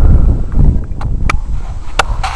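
Wind buffeting the microphone as a heavy low rumble that eases off about halfway through, with a few sharp clicks about a second in, shortly after, and at the end.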